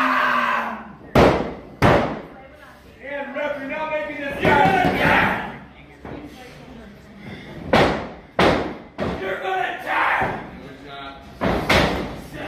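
Sharp thuds on a wrestling ring, one pair about a second in, another pair about eight seconds in and one more near the end, between people shouting.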